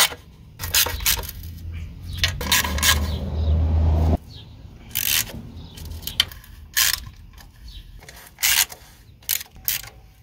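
Ratchet and socket clicking and scraping on metal as valve cover bolts are snugged down, in scattered sharp clicks. A low hum runs under the first four seconds and cuts off suddenly.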